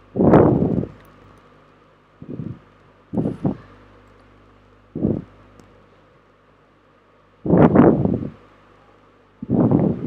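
Six short, irregular rushes of rustling noise on the microphone, over a faint steady low hum.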